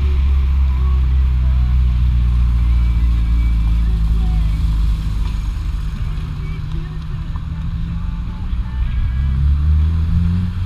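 Car engine droning steadily at cruising speed with road noise, rising in pitch near the end as the car speeds up.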